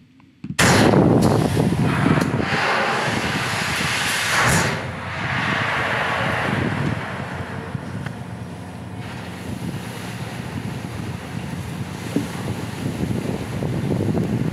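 Surf Lakes wave machine: its big plunger driving down into the pool and the water surging out into a wave, a loud rush of water that starts suddenly under a second in, with a couple of louder surges in the first five seconds before settling into a steadier rushing.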